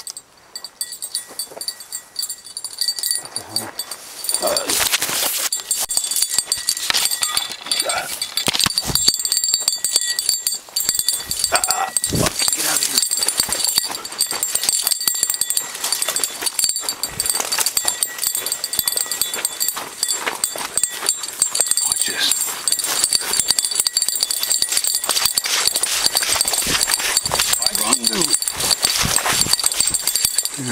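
Rustling and crackling of brush, twigs and dry grass close to the microphone as someone pushes through vegetation, going on almost without a break after the first few seconds.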